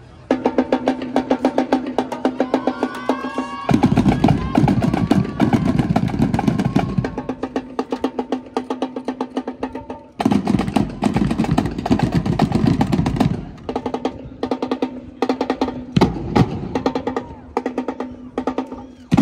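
Marching drum line playing a fast cadence on snare drums, tenor drums and bass drums. A steady stream of rapid strokes runs throughout, and heavier full-section passages with the bass drums come in about four seconds in and again about ten seconds in.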